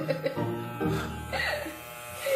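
Electric hair clippers buzzing steadily as they cut hair.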